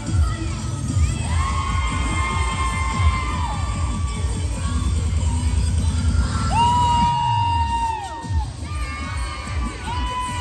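Cheerleading routine music mix with a heavy bass beat, under a crowd of young spectators screaming and cheering. Long high cries hold a pitch and then fall away, and the beat thins out about seven seconds in.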